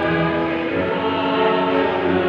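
A choir singing a hymn in Tagalog, in held notes with a change of note about two-thirds of a second in.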